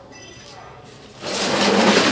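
Stihl MS 660 chainsaw's plastic top cover being taken off and handled: a loud rough scraping rustle starts a little over a second in and lasts about a second.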